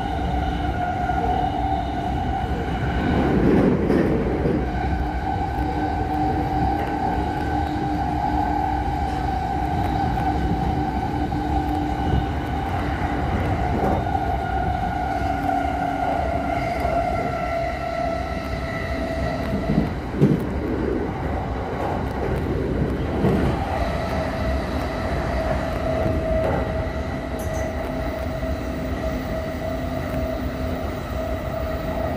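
Yokosuka Line electric commuter train running at speed, heard from inside the car: a steady whine over the rumble of the wheels on the rails. There are a few brief louder surges, the loudest about twenty seconds in.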